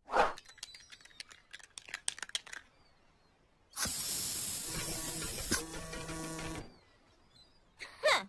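Cartoon aerosol spray can hissing in one steady spray of about three seconds, starting about four seconds in. Before it comes a short run of light musical clicks and blips.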